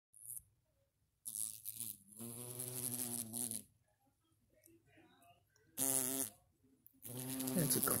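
Yellow jacket wasps buzzing their wings in bursts: a long buzz of a second or two, a short one around six seconds in, and buzzing again near the end.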